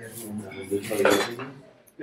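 Handling sounds of a smartphone being slid out of its paper sleeve: several short rustles and light clatters of the phone and packaging. They fade out near the end.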